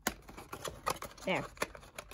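Hands prying open a cardboard booster box: a scattered series of short, sharp clicks and taps of fingers and cardboard, about half a dozen in two seconds.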